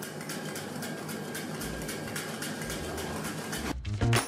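Black truffle shaved with a hand truffle slicer: faint, fast dry scraping and fine crackling as the blade cuts thin slices.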